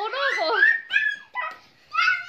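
Young children's high-pitched shouts and squeals during a play fight, broken into short yelps, with a brief quieter gap near the end.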